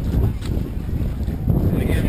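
Wind buffeting the camera's microphone: an uneven low rumble, with faint crowd voices behind it.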